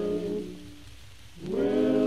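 A male vocal quartet singing a cappella on a 1949 recording: a held chord dies away about half a second in, and after a short pause the voices slide up into the next chord about a second and a half in, over a low background hum.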